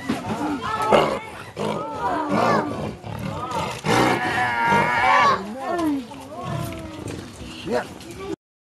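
Spotted big-cat cubs growling in a run of short calls that rise and fall in pitch, with the longest and loudest about four to five seconds in.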